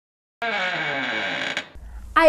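A short intro transition sound effect: after a brief dead silence, about a second of a dense effect with several tones sliding downward, stopping abruptly just before the narration starts.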